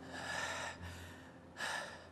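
A man gasping for breath twice, a longer breath at the start and a shorter one near the end, panting in pain and fear after being beaten and threatened.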